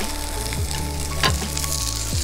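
Meat sizzling on a tabletop grill, a steady hiss, with soft background music's held notes underneath.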